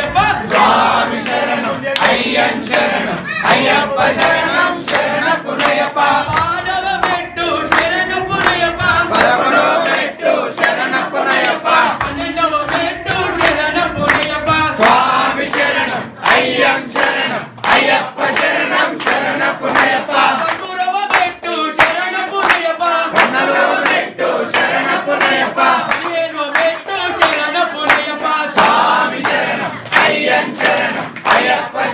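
A group of devotees singing a devotional song together at the pooja, with hands clapping along throughout as sharp, frequent claps.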